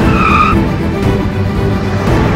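A short, high tyre squeal of under half a second near the start, a vehicle braking hard, over background music.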